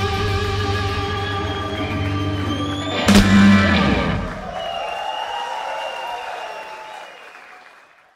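Live rock band with electric guitar, keyboard, bass and drums holding a final chord, then a sharp ending hit about three seconds in that rings out and fades away to silence: the close of the song.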